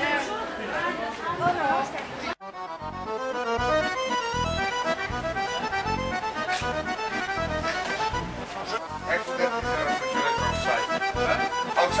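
Accordion music with a steady beat, cutting in abruptly a little over two seconds in after a brief moment of people's voices chatting.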